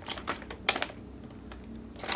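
Paper pages of a building-instruction booklet being turned by hand: a few short, crisp paper flicks and rustles, mostly in the first second and a half.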